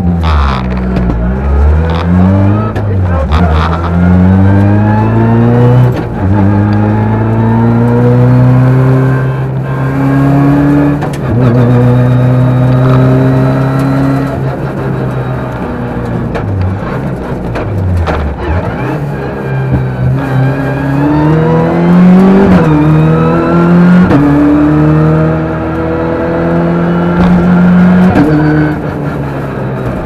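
Rally car engine heard from inside the cockpit, launching off the stage start and accelerating hard up through the gears, the revs climbing and falling back at each gear change.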